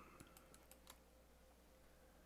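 Near silence: room tone with a few faint computer clicks during the first second.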